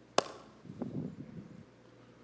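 A single sharp click just after the start, followed by about a second of faint, low, irregular sounds.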